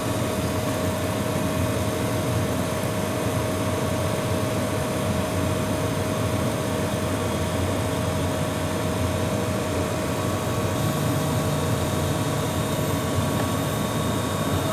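Laser engraving machine running while it cuts MDF: a steady mechanical drone with a constant whine through it, and a low hum that steps up slightly about eleven seconds in.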